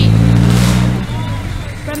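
A motor vehicle's engine going by close at hand, a steady low drone with a rushing hiss that swells about half a second in and fades within the first second.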